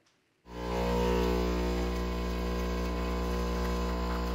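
Nespresso capsule machine's pump buzzing steadily as it brews coffee into a cup: a constant, even hum that starts suddenly about half a second in.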